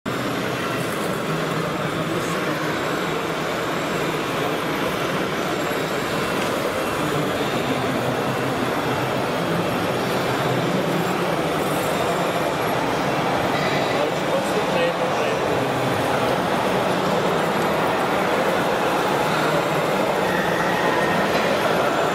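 Steady din of radio-controlled model construction vehicles running, mixed with indistinct voices.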